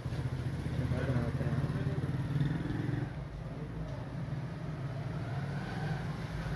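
A low, steady engine hum, like a motorcycle running close by, slightly louder for the first few seconds.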